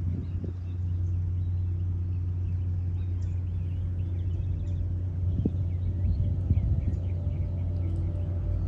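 A steady low machine hum with an even, unchanging drone, from an unseen motor running. Scattered faint high chirps sound over it.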